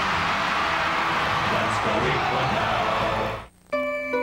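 Television commercial soundtrack: music over a dense, noisy bed of sound, which cuts out briefly near the end. Held notes of the next ad's music then begin.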